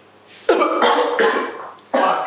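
A man coughing hard after swallowing a shot of very concentrated, harsh first-fraction espresso, one bout about half a second in and another starting at the end.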